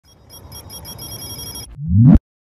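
A high, rapidly repeating ring like a telephone bell fades in over a low rumble. Near the end a low rising swell grows loud.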